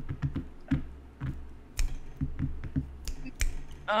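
Computer keyboard keys clicking in irregular short runs, several strokes a second, over a low steady hum.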